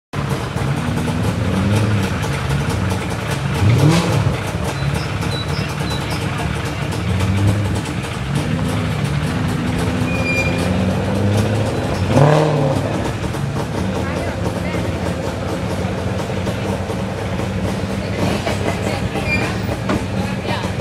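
Racing car engine running at idle, revved up sharply twice, about four seconds in and again about twelve seconds in.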